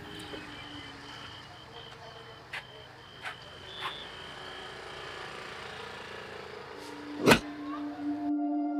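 Street background of traffic noise, with an intermittent high beeping tone through the first half and a few faint clicks. A single sharp knock comes about seven seconds in, and a low held tone begins just before the end.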